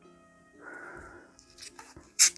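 Soft background music with a brief whiny, meow-like vocal sound just over half a second in. Near the end come a few small clicks as the cap of a plastic sparkling-water bottle starts to be twisted.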